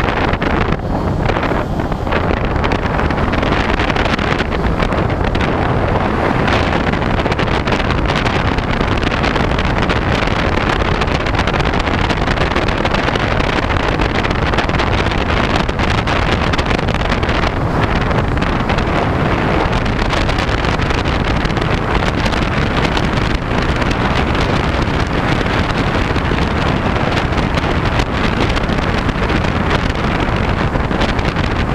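Steady, loud wind rush on the onboard camera's microphone of a Talon FPV model airplane in flight, the airstream over the airframe covering any motor sound.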